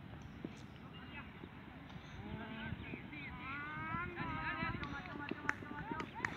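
Distant shouts and calls of players in an outdoor field game, growing from about two seconds in, over a low steady rumble.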